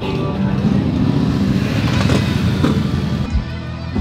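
Motorcycle engine running on the street with music mixed in; a little over three seconds in, it gives way to background music with a steady kick-drum beat.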